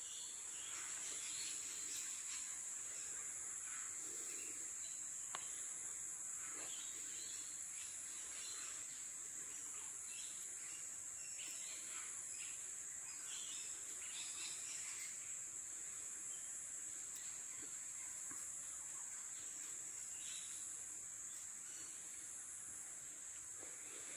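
Faint, steady high-pitched drone of insects, such as crickets, with a few faint short chirps scattered through.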